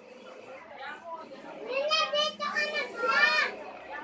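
Children's voices: a child cries out twice in high-pitched vocal calls without clear words, about two and three seconds in.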